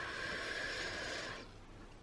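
A faint, steady hiss that fades out about a second and a half in.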